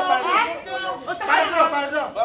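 Speech only: several people talking.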